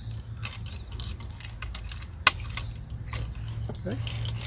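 Light metallic clicking and jingling from the small chains hanging off a homemade wooden cable-cam carriage as its pulley rollers are set onto the ropes, with one sharper click a little after two seconds in.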